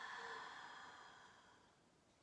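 A soft, long audible exhale or sigh from a person hanging in a forward fold. It fades away over about a second and a half.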